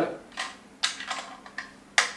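Small hard plastic mounting parts being handled and fitted together: a handful of quick, irregular clicks and scrapes as a threaded mount adapter is pushed onto an LED panel light.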